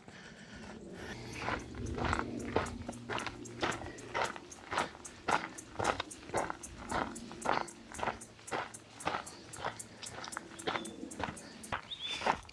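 Footsteps on a dry dirt and leaf-litter bush track at a steady walking pace, about two to three steps a second.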